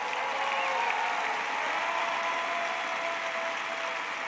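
A large crowd applauding steadily.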